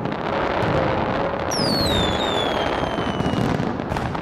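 Fireworks display: a dense, continuous crackle of bursting fireworks, with a whistle falling in pitch about a second and a half in.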